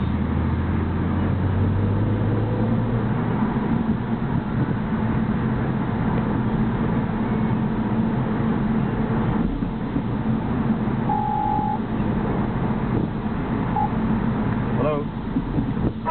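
Car cabin noise while driving: steady engine hum and road noise, with the engine note rising about a second in. A short single beep sounds about two-thirds of the way through.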